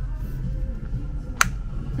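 Store background music playing over the in-store speakers, with one sharp click about one and a half seconds in: the flip-top cap of a plastic body wash bottle snapping shut.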